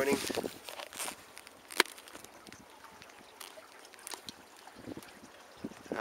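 Water lapping and trickling against a small sailboat's hull as it moves, with scattered light ticks and one sharp click about two seconds in.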